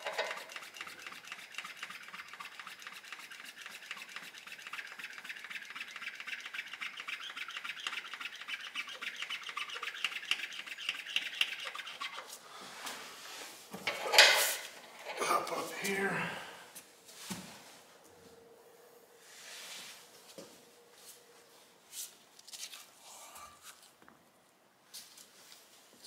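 Hand primer on a 12-valve Cummins 5.9 mechanical fuel lift pump being worked, a fast, even rasping rhythm that stops about halfway through, followed by a few louder knocks. The priming pushes fuel through the system toward the cracked-open injector lines.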